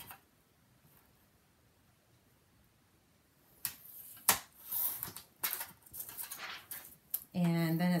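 Near silence for the first few seconds, then a sliding-blade paper trimmer and a sheet of acetate being handled: a sharp click from the trimmer's clear arm, then a run of rustles and scrapes as the sheet is set and cut.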